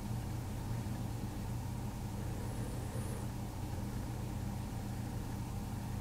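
Steady low hum of background room noise, with no distinct events.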